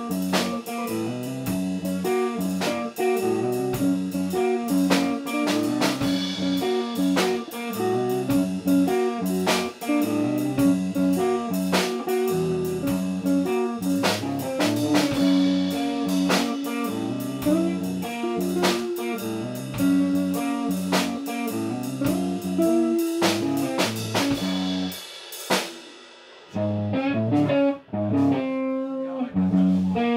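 Live jam from electric guitar and drum kit in a jazzy, bluesy groove. About 25 seconds in the drums stop and a guitar carries on with a few sparse notes.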